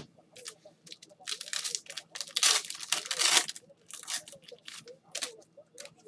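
A trading-card pack wrapper being torn open and crinkled by gloved hands. The loudest ripping comes between about one and three and a half seconds in, followed by a few shorter crinkles.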